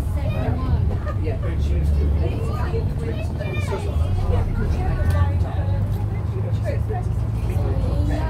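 Bristol VR double-decker bus engine running steadily under way, a continuous low drone heard inside the cabin. People talk over it without a break.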